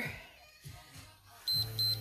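Two short, high electronic beeps in quick succession about one and a half seconds in, over faint background music.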